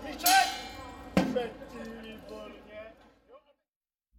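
A loud shout, then a single sharp knock a little over a second in, followed by fainter voices that fade away; the sound then cuts off to silence shortly before the end.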